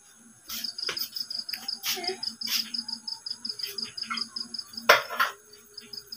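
A cricket chirping in a rapid, even, high-pitched pulse train that starts about half a second in. Over it are scattered light clicks of a screwdriver working the socket's terminal screws, with one louder knock near the end.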